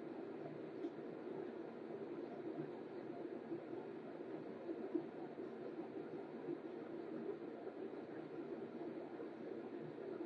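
Faint, steady background noise of a quiet room: a low hiss and hum with no distinct events, and a small click about five seconds in.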